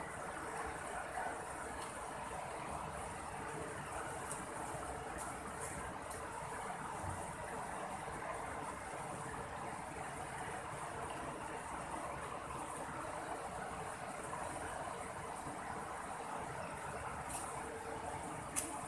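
Steady rush of a shallow river running over rocky rapids.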